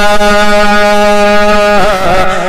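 A man's voice holding one long, steady sung note of a naat recitation into a microphone, wavering into a short turn near the end.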